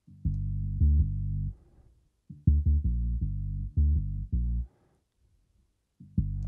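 Punchy dub synth bass loop played back through the Tone Projects BassLane Pro stereo-bass plugin, heard as the full processed signal. Low sustained bass notes come in two phrases, with a few short accented notes in the second, longer phrase.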